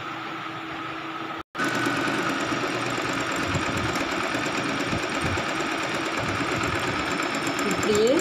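Singer electric sewing machine running steadily, stitching through fabric. A quieter steady hum breaks off briefly about a second and a half in, and the machine then runs louder and evenly.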